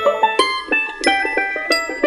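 Background music: a tune of quick, separate pitched notes with no bass line.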